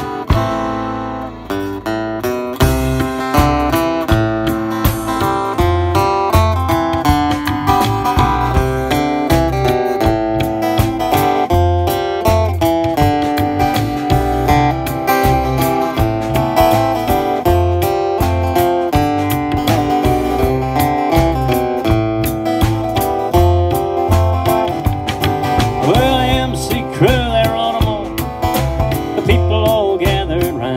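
Live country band playing: strummed acoustic guitar, upright double bass and drum kit keeping a steady beat.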